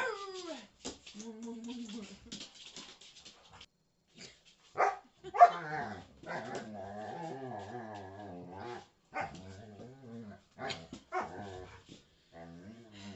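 Dog vocalizing: a couple of sharp barks about five seconds in, then a long call that wavers in pitch for about three seconds, followed by shorter calls near the end.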